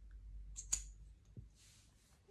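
Faint handling noises from a small plastic fidget toy, with one sharp click a little under a second in and a soft rustle later.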